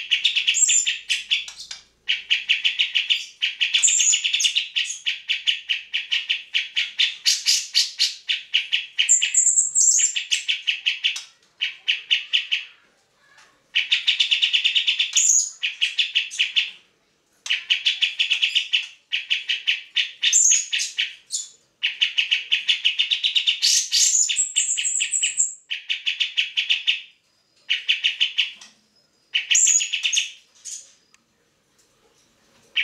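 Grey-cheeked bulbul (cucak jenggot) in full song: bursts of rapid, repeated chattering notes lasting one to three seconds, with short breaks between them. Several bursts end in a brief higher whistle.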